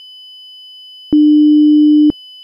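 A loud, steady, single low electronic tone that switches on with a click about a second in and holds for about a second, ending in another click. A faint steady high whine runs under it.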